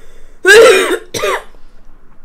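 A woman coughing twice, loud and throaty, the first cough longer than the second.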